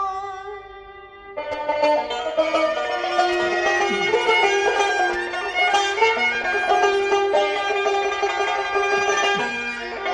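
Azerbaijani mugham ensemble in the Chahargah mode: a held note dies away, and about a second and a half in, the tar and kamancha begin an instrumental passage, plucked and bowed strings playing together.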